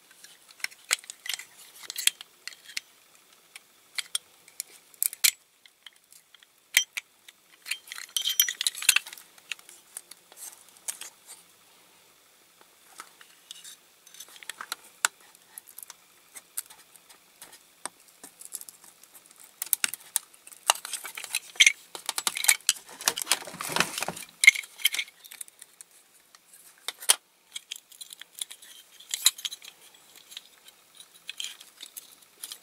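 Small metal tool clicking and scraping against a die-cast metal toy roller while it is being taken apart, with scattered sharp metallic clinks. There are two longer bouts of scraping and rattling, the louder one about three-quarters of the way through.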